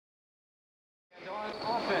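Dead silence for about the first second, then the sound of an indoor basketball game cuts in abruptly: voices and court noise echoing in a gym.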